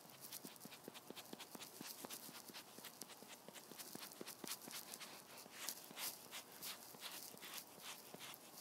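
Makeup sponge dabbing and rubbing cream foundation onto dry skin: a quick run of faint, scratchy strokes, several a second, that sound like sandpaper. The skin's dryness makes the sponge drag rough and hard to blend.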